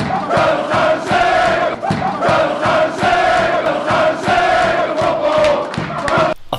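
A dressing room full of rugby league players chanting and shouting together in a victory celebration, loud and rowdy, with long held calls repeating over and over.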